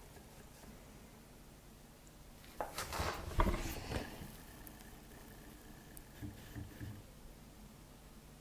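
Quiet room tone, broken about two and a half seconds in by a second-long burst of rustling and light knocks as a person leans forward and brings a hand to the chin, clothing rubbing near a clip-on lavalier microphone; a few faint soft thumps follow near the end.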